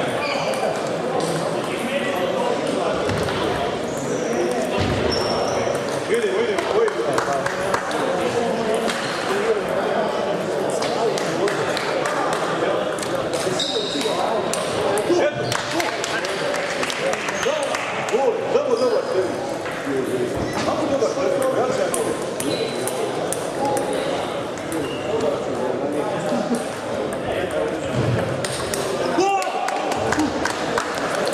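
Table tennis balls clicking off bats and tables, many short irregular hits from several tables at once, over steady indistinct chatter in a large sports hall.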